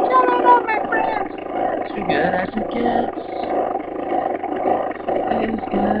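A person singing over loud backing music, muffled and thick. The sung pitch glides are clearest in the first second; after that the voice and music blend into a dense, rough wall of sound.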